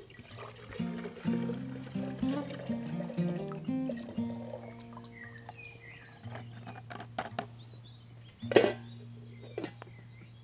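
Background music with held, changing notes over a steady low drone, and water being poured from a bottle into a pot. A single sharp knock comes about eight and a half seconds in.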